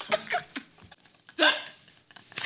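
Women laughing hard in short, breathy, hiccup-like bursts, with a near-quiet pause in the middle and one sharp burst about one and a half seconds in.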